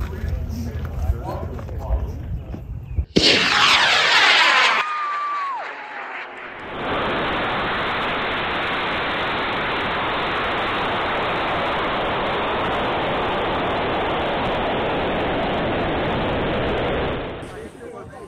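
A high-power rocket motor ignites and lifts off: a sudden, loud rush about three seconds in, lasting about a second and a half, whose tone sweeps downward as the rocket climbs away from the pad. From about seven seconds in, air rushes steadily past the onboard camera in flight, and the sound cuts off near the end.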